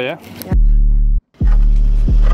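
Background rap music with a deep bass line. It drops out for a moment a little past a second in.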